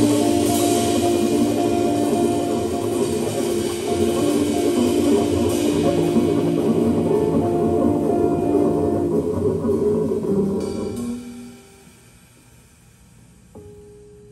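Live trio of electric guitar, double bass and drum kit playing, with several held notes over busy drums. The music dies away about eleven seconds in as the piece ends, leaving quiet with a faint held tone near the end.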